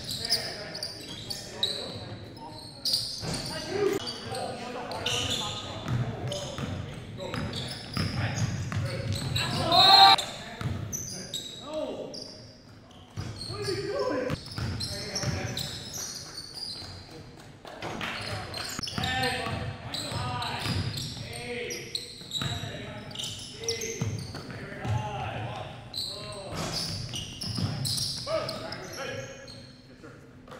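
Basketball bouncing on a hardwood gym floor and players' voices calling out through an indoor pickup-style game, echoing in a large gymnasium. A loud voice stands out about ten seconds in.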